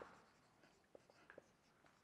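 Faint strokes of a marker pen writing on a whiteboard, a few short scratches and taps as the letters are drawn.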